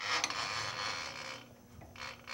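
Twist drill bit starting to cut into flat metal bar stock: a grinding scrape for about a second and a half, then dropping away to a faint steady hum.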